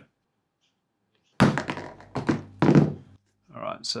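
Hammer striking a 3D-printed part in Nova3D water washable tough resin on a wooden workbench: one sharp thunk about a second and a half in, with more knocking for about a second after. It is a fairly gentle first blow, and the part does not break.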